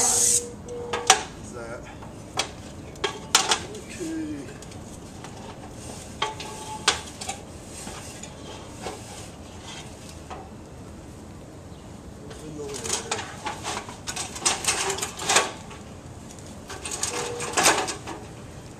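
An airless paint sprayer's hiss cuts off at the start, followed by scattered sharp knocks and metallic clinks from a ladder being climbed down, coming thicker and faster near the end.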